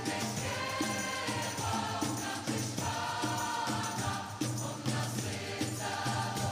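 Large choir singing a worship song together, with instrumental accompaniment keeping a steady beat.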